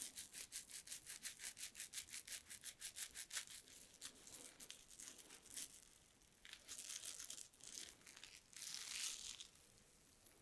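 Damp fingertips working foam cleanser into a lather over a bearded face. It starts as a fast, even rubbing of about six strokes a second, then slows into softer, longer swishes near the end.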